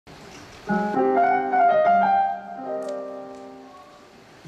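Stage keyboard playing piano chords: a few sustained chords, the first struck about two-thirds of a second in, the last one fading away near the end.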